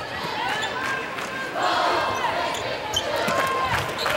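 Arena crowd voices calling and shouting over each other, louder from about halfway through, with a basketball being dribbled on the hardwood court.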